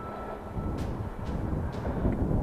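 Rumbling wind buffet on a chest-mounted camera microphone mixed with the tyre noise of a bicycle rolling along a tarmac lane, with a few faint clicks.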